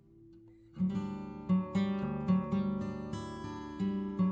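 Background music: a strummed acoustic guitar comes in less than a second in and plays regular chords.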